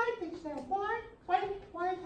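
Indistinct voices in a small room: several short spoken or vocalised phrases that the recogniser did not catch as words.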